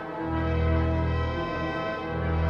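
The Wanamaker pipe organ playing sustained chords over deep bass notes that change about every second and a half.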